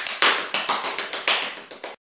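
Hand clapping in a quick, even rhythm of about seven claps a second, welcoming a guest; it cuts off abruptly near the end.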